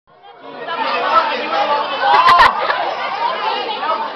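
Many people talking at once around a crowded restaurant dining room, with a couple of sharp knocks a little over two seconds in.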